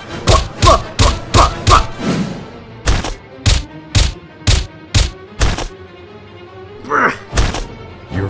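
A quick flurry of cartoon punch impacts with short grunts, followed by a run of about seven evenly spaced thuds, roughly two a second, that sound like footsteps. A low steady hum sits under the later part.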